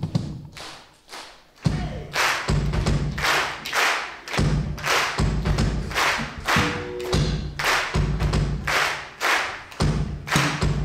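Live band of drum kit, bass guitar and keyboards playing. It is sparse at first, then the full band comes in a little under two seconds in, with heavy kick-drum and bass hits about every 0.8 s under cymbals.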